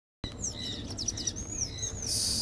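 Birds chirping: a series of short, high whistled notes that slide up and down in pitch, starting a fraction of a second in, with a quick run of repeated notes around the middle.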